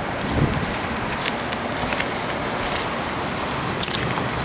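Steady wind noise on the microphone on an open roof. A low thump comes about half a second in, and a few light clicks follow as the camera is carried along.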